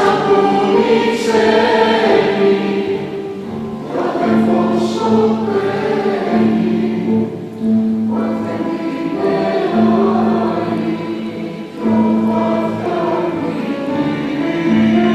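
Mixed choir of women's and men's voices singing a slow Greek song in phrases of about four seconds each, each phrase swelling in and easing off over a held low note.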